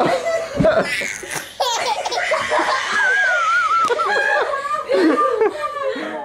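A toddler laughing hard in repeated belly laughs, with a high wavering squeal about halfway through.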